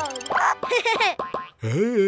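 A quick run of wobbling, pitch-bending cartoon sound effects, then a short voice-like sound rising and falling near the end, over children's music.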